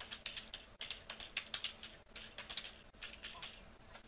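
Typing on a computer keyboard: quick runs of light key clicks in short bursts, with brief pauses between words.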